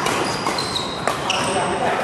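Badminton rally: court shoes squeak briefly and repeatedly on the synthetic court mat, and a single sharp hit of racket or shuttlecock comes about a second in. Voices chatter in the background.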